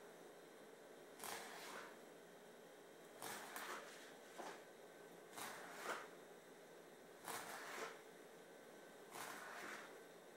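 Faint strokes of a knife scoring the skin-on side of a scaled American shad on a cutting board, about six short scraping cuts spaced a second or two apart. The cuts go across the fish's many small bones.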